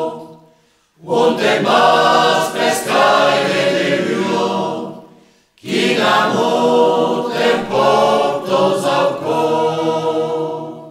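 A choir singing a cappella in long held phrases. The voices break off twice, briefly falling silent about half a second in and again about five seconds in, before the next phrase starts.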